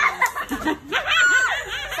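Girls laughing together, with some speech mixed in.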